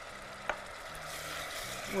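Garlic sizzling in hot oil in a metal pot, with vinegar and sugar just added: a steady hiss, and one light tap about a quarter of the way in.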